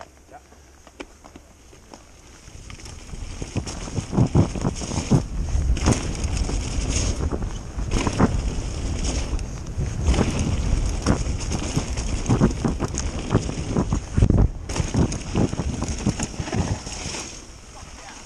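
Mountain bike descending a dirt forest singletrack, heard from a camera on the rider: wind buffeting the microphone and the tyres running over loam, with the bike rattling and knocking over roots and bumps. It is quiet at first and builds from about three seconds in as the bike picks up speed, with several sharp knocks, then dies down just before the end.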